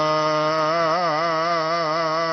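Gurbani kirtan in Raag Suhi: a singer holds one long sung note, its pitch wavering in an ornament from about halfway through, with a steady low tone beneath it.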